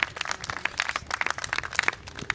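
Hand clapping: irregular sharp claps from a few people, several a second.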